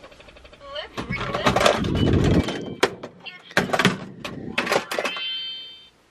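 A sliding closet door rolling along its track: a rumble, then a run of knocks and rattles. A brief high steady tone sounds near the end.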